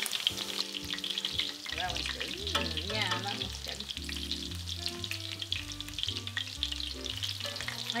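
Shrimp corn cakes shallow-frying in hot oil in a skillet: a steady crackling sizzle with many small pops.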